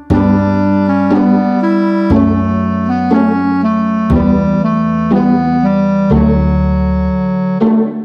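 Instrumental intro music on an organ-like keyboard: sustained chords over held bass notes, the chord changing about every two seconds, with a brief break just before the end.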